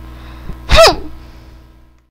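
A girl's voice lets out one short, sharp indignant 'hmph' with a falling pitch, about three quarters of a second in, over a faint low hum.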